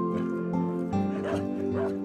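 A dog barking twice in the second half, over soft background music with sustained notes.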